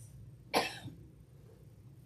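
A single cough about half a second in, short and sharp, with a smaller catch just after it, over a faint steady room hum.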